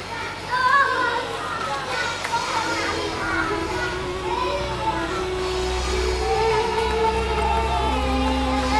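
Children's voices chattering and shouting at play. Background music fades in about three seconds in, with long held notes and a low bass that swells toward the end.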